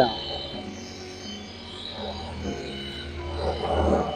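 Dual-action polisher running at low speed with a cutting pad on a painted panel: a steady low buzz.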